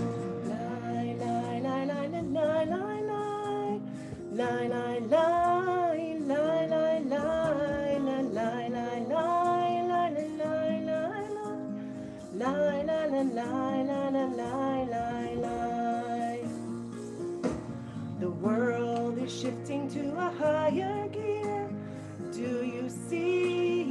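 A woman singing a slow song along with a recorded instrumental backing track.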